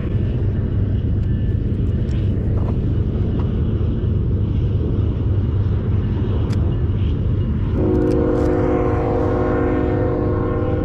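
A train's steady low rumble, with its horn sounding a held chord of several notes starting about eight seconds in.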